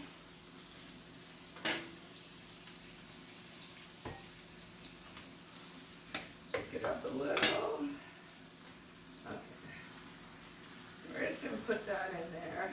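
Onions and ground beef frying in a skillet: a steady faint sizzle, with a sharp knock just under two seconds in and a louder stretch of clattering and handling noise near the middle as the meat is worked into the pan.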